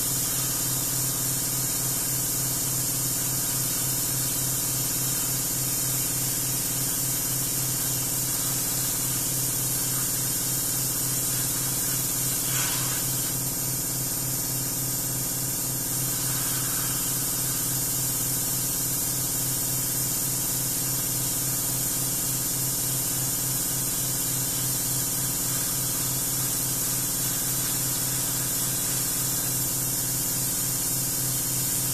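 Airbrush spraying paint onto a motorcycle wheel rim: a steady, unbroken airy hiss of compressed air, with a steady low hum underneath.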